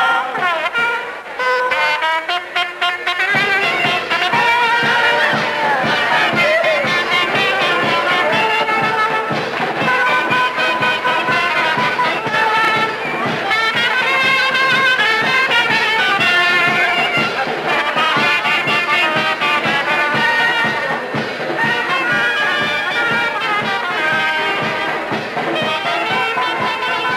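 Brass band music with trumpets and trombones playing a melody over a steady beat.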